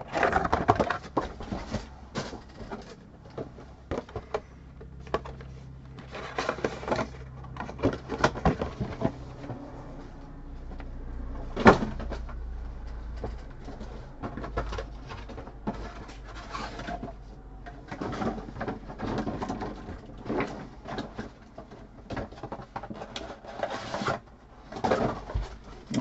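Foil-wrapped trading card packs being handled on a table: scattered rustles and light clicks, with one sharper click about twelve seconds in.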